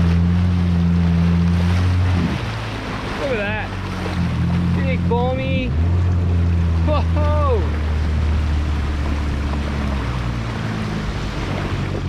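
Jet ski engine running at low cruising speed, a steady drone that drops in pitch about two seconds in and picks back up a couple of seconds later, with water rushing and splashing along the hull.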